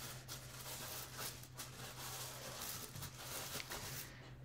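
Faint room tone with a steady low hum and a few light taps and rustles from small handling at a desk.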